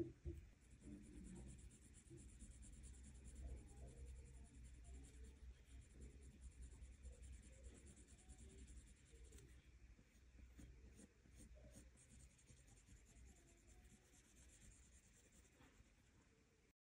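Faint scratching of a pencil on paper in short, repeated strokes as a portrait's nose and lips are shaded.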